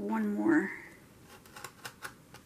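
A woman's short wordless vocal sound, a hum that rises in pitch, followed by a few faint light clicks and taps as paper is handled on the page.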